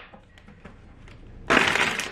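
A short, hard puff of breath, about half a second long, near the end, blowing out a tea-light candle; before it, only quiet room tone.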